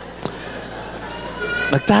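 A man's speaking voice from the stage, mostly a lull with one sharp click about a quarter second in. Then comes a short, faint, high-pitched vocal sound, and speech resumes just before the end.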